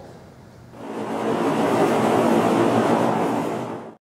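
Audience applauding. The applause starts under a second in and builds to a steady level.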